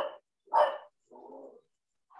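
A dog barking a few times, short separate barks with the last one quieter, picked up through a video call's microphone.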